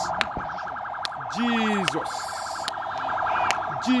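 A rapidly pulsing electronic alarm tone, steady in pitch and unbroken, with a voice crying out about a second and a half in and again near the end ("Jesus!").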